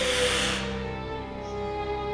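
Bowed string music holding sustained notes over a low drone, one line sliding slowly downward. A brief hissing burst sounds at the start, the loudest moment.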